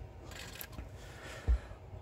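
Faint handling noise from a Radiomaster MT12 radio transmitter being held and worked by hand, with one low thump about one and a half seconds in.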